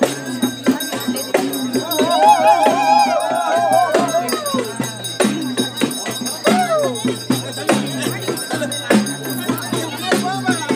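Traditional festival drumming with a steady beat and rattling percussion over a crowd. About two seconds in, a high, wavering pitched sound rides over the drums for about two seconds, and again briefly later.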